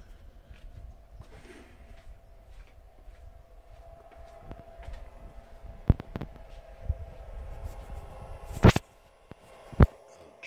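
Footsteps and handling noise while walking indoors with a hand-held camera, with a few sharp knocks or clicks. The loudest knock comes near the end, after which the low shuffling drops away, and a second sharp click follows just before the end.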